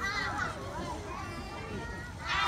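Children's voices chattering and overlapping in a large outdoor group.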